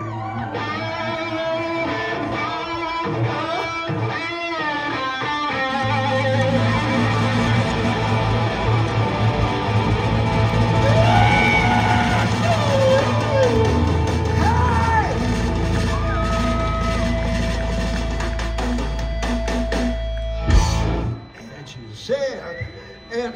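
Live electric guitar and bass guitar through a loud festival PA. Guitar notes and pitch slides play over a held bass note that steps lower partway through, then a single sharp hit and a sudden cut-off near the end.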